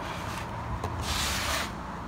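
A rubbing, scraping noise lasting about half a second as the raw pork loin and the wooden cutting board are shifted across the table, over a low steady rumble.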